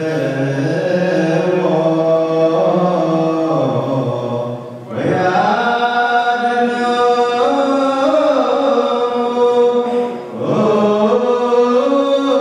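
Group of male voices chanting Orthodox Tewahedo liturgical chant (zema) in unison. Long held notes in slow phrases, with short breaks for breath about five and ten seconds in.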